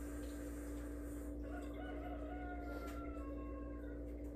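A faint, drawn-out animal call lasting nearly two seconds, starting about a second and a half in and dipping slightly at its end, over a steady hum.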